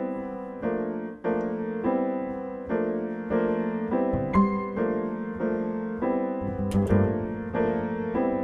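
Steinway grand piano playing jazz chords struck at an even pulse, roughly two a second, with deeper bass notes joining about halfway through.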